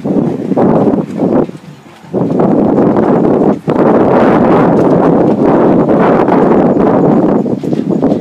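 Wind buffeting the microphone in loud, uneven gusts, dropping away briefly about two seconds in and again about three and a half seconds in.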